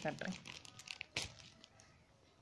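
Clear plastic packaging cover crinkling as it is handled: a string of small crackles, with a sharper one a little over a second in.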